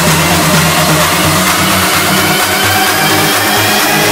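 Electronic dance music in a build-up: a synth riser and noise sweep climb steadily in pitch while the bass thins out and drops away over the last couple of seconds.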